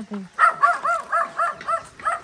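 A dog barking rapidly in a run of short, high-pitched yaps, about four a second, starting about half a second in.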